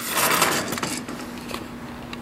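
A sliding screen door being pushed open along its track, a scraping slide that lasts about a second and then dies away, leaving a faint steady hum.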